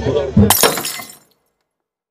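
Music with a bass line, then about half a second in a sudden crash like shattering glass that dies away within a second, followed by silence.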